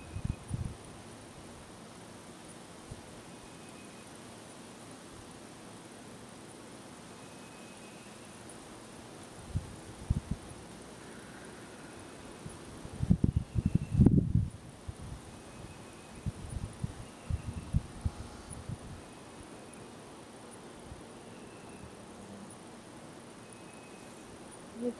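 Outdoor woodland ambience: a steady high insect drone with a faint short chirp every couple of seconds. Irregular low rumbling gusts of wind on the microphone come through it, loudest about 13 to 14 seconds in.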